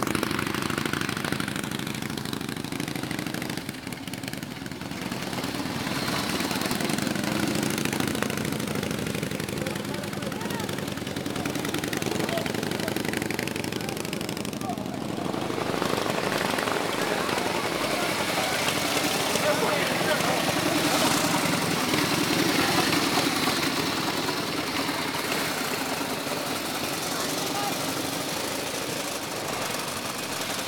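Antique Harley-Davidson motorcycle engines running, with crowd chatter.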